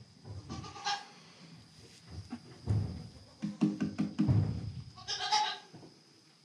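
A dairy goat doe bleating twice, briefly about half a second in and again at about five seconds, with a run of light knocks in between.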